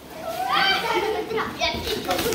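Children's voices calling out and chattering, high-pitched, with a brief knock near the end.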